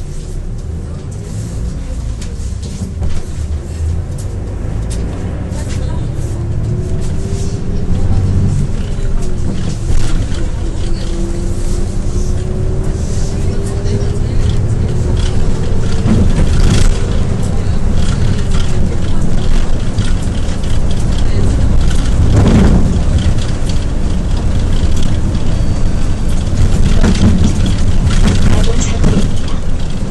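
Inside a Hyundai New Super Aerocity city bus under way, engine and road noise rumbling and growing steadily louder as it gathers speed, with a faint whine that rises in pitch. A few sharp knocks from the body come through over bumps.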